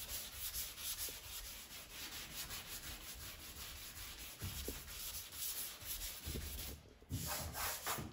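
Hand sanding block with dry sandpaper scrubbing across 2K filler primer on a car body panel, in quick, steady back-and-forth strokes. This is the filler being sanded flat to level out low spots before painting. The strokes pause briefly near the end.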